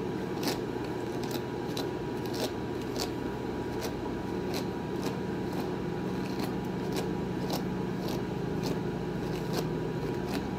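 Brush strokes through a Yorkshire terrier's long, silky coat: short crisp swishes, irregular, about two or three a second, over a steady low hum.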